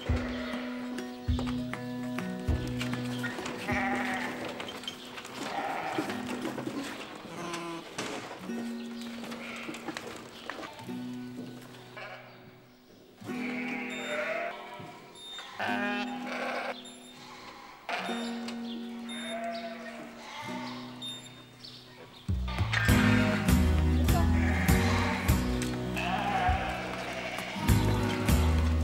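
Young ewe lambs bleating now and then in a handling race, over background music with a steady beat that grows louder near the end.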